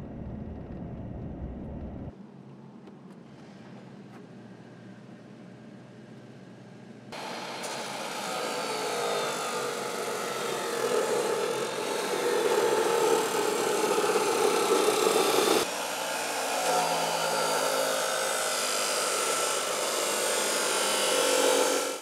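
Road and engine rumble inside a pickup's cab while driving, then an electric abrasive chop saw running and cutting metal for several seconds, its sound changing under load.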